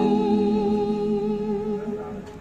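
A man's and a woman's voices holding one long final note together, fading away near the end.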